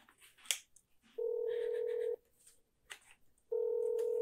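Telephone ringback tone as an outgoing call rings through: a steady low tone about a second long, then a second ring starting near the end, with a sharp click about half a second in.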